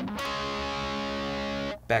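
Electric guitar playing double notes, two strings fretted and struck together once, ringing steadily for about a second and a half before being cut off.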